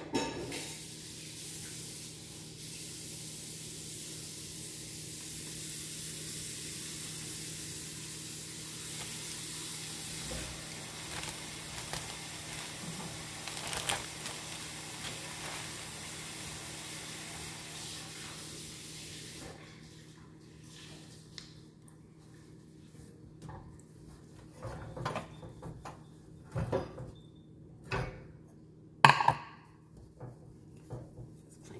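A steady hiss, like a kitchen tap running, cuts off about two-thirds of the way through. Then come scattered clanks and knocks of metal stove grates and a pot being handled on a gas range, the loudest clank near the end.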